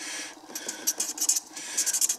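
Felt-tip marker scratching across paper in a quick, uneven run of short strokes as a word is handwritten.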